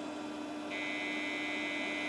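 PC speaker starting a steady high-pitched tone about two-thirds of a second in, over a steady low hum from the computer: the start of the Digi DOS virus's looping audio payload as it activates.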